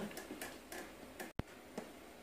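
A few faint, scattered ticks and clicks of handling noise, with a brief dropout about a second and a half in.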